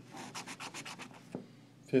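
A scratch-off lottery ticket being scratched by hand: a quick run of short scraping strokes, about eight a second, for just over a second, then a single tick.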